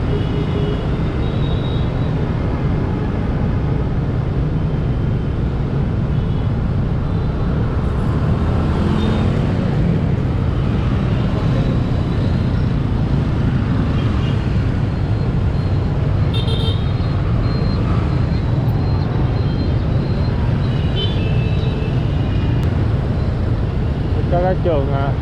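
Onboard sound of a motorbike riding through dense city traffic: a steady low rumble of wind on the microphone, engine and road noise, mixed with surrounding motorbikes and cars. A few short horn toots sound around the middle and again later.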